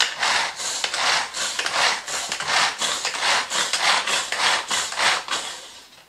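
Rhythmic scraping strokes from kitchen work at the counter, about four a second, fading out near the end.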